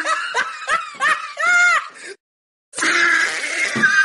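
Cartoon-style laughter: a run of short laughs ending in a longer drawn-out one, a gap of about half a second, then laughing again near the end.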